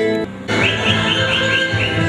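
Solo nylon-string classical guitar playing, cut off about half a second in by folk dance music with a quick repeated rising figure in the high notes.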